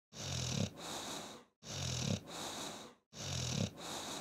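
Snoring: three identical snore cycles, each about a second and a half long. Each is a rough, buzzing in-breath followed by a hissing out-breath, with a short gap of silence between cycles.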